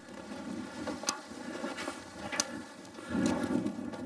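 Steady low outdoor rumble with two short, sharp clicks, the first about a second in and the second a little over a second later; the rumble grows somewhat louder near the end.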